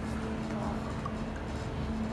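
Room noise: a steady low rumble with a faint hum, and no distinct event.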